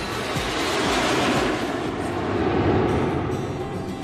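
Jet airliner's engine noise heard from the cabin, a rushing sound that swells and then fades, over background music.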